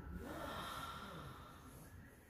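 A faint, drawn-out breath, a person exhaling through the nose, lasting about a second and a half.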